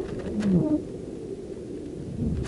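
Weather-balloon payload in flight: a steady low rumble, with a brief squeaky creak and a couple of sharp clicks about half a second in.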